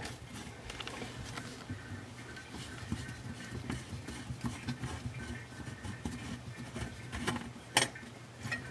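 Faint scrapes and small clicks of a corroded pivot nut being unscrewed by hand from a bathroom sink's pop-up drain tailpiece, with one sharp click a little before the end.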